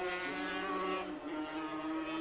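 Two-stroke 250cc Grand Prix racing motorcycle engines at high revs, their notes held nearly steady; one drops slightly in pitch shortly after the start.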